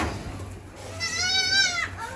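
A young goat bleating once, a high, wavering call of about a second, starting about a second in. A brief knock comes at the very start.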